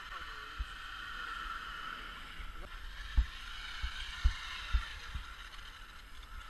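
Radio-controlled trucks driving on ice: a steady hiss with a faint whine running through it, broken by several low thumps in the second half.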